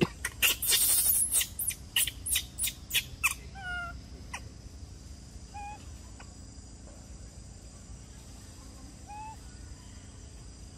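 Animal calls in a forest: a rapid run of about ten loud, harsh calls in the first three seconds, then a few short, pitched calls spaced out through the rest.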